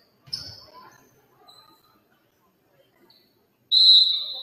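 A referee's whistle blown once, a loud shrill blast starting just before the end. Earlier, a single thud with a sharp squeak and a few faint short squeaks, like ball and shoes on the hardwood gym floor.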